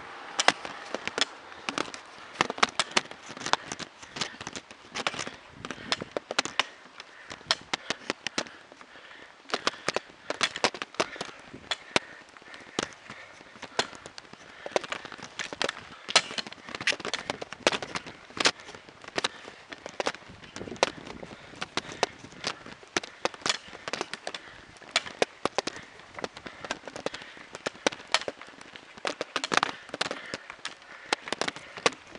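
Dense, irregular clicking and crackling, several sharp clicks a second, from a camera rattling on a bicycle being ridden up a steep hill.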